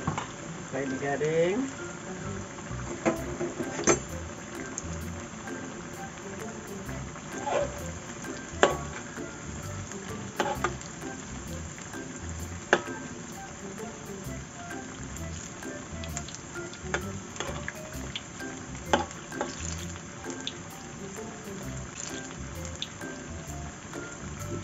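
Rice-flour fritters deep-frying in hot oil in a wok, a steady sizzle. A metal slotted spatula clinks sharply against the wok now and then as the fritters are turned.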